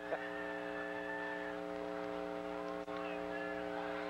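Steady multi-pitched electrical buzzing hum on the old broadcast audio, unchanging throughout, with a single faint click near the end.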